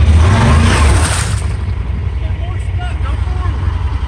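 Side-by-side UTV engine running hard with the tires churning through deep mud, loudest in the first second and a half, then easing to a lower, steady run.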